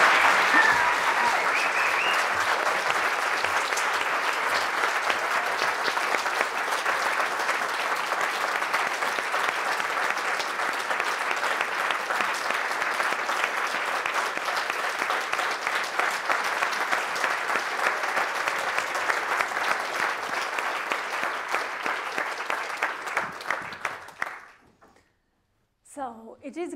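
A large audience applauding steadily, a dense patter of many hands clapping that slowly fades, thinning to a few separate claps and stopping suddenly near the end.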